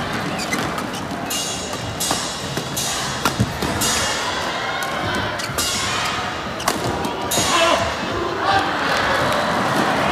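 Badminton rally: a string of about eight sharp racket strikes on the shuttlecock, spaced roughly a second apart, over steady crowd noise from the arena. The rally ends with a hard smash that goes unreturned.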